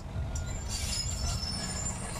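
John Deere excavator working: a steady low engine rumble with a high, thin metallic squeal that comes in about half a second in and holds.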